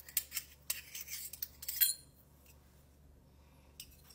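Dual piping bag parts being handled: a run of light clicks and rustles over the first two seconds, then quiet.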